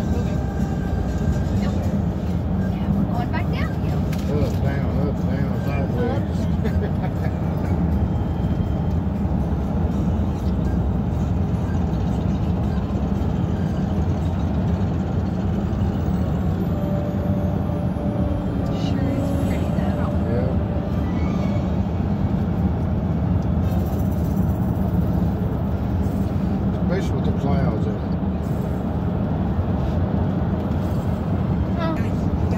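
Steady low road and engine noise heard inside a car's cabin at highway speed.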